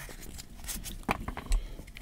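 Razer Hammerhead true wireless earbuds being pried out of their plastic charging case: a few light clicks with faint rubbing of plastic and fingers.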